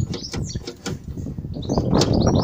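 Small birds chirping in quick, short high notes, over a low rumble of wind on the microphone, with a few light clicks in the first second.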